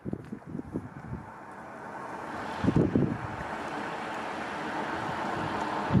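A train's steady rumble building as it approaches the closed level crossing. A gust of wind hits the microphone about halfway through.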